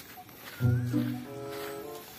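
Background music: after a brief quiet, a low, held note comes in about half a second in, followed by a second held note that fades out near the end.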